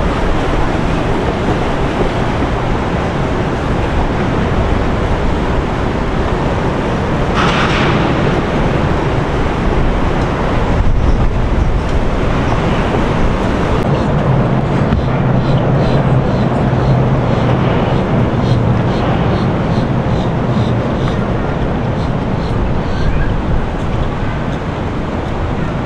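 Boat engines running on the water, with splashing water and wind rushing on the microphone. A brief louder hiss comes about 7 seconds in. From about halfway through, a steady low engine hum stands out.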